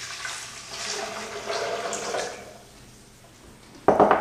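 Water poured into a blender jar for about two seconds, then stopping. A sharp knock near the end.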